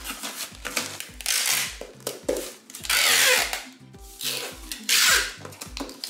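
Packing tape pulled from a handheld dispenser and pressed across a cardboard shipping box, in three long pulls of about half a second to a second each, over background music with a steady beat.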